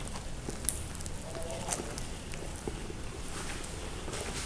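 A man quietly chewing a bite of baked savoury bread roll, soft scattered clicks from his mouth.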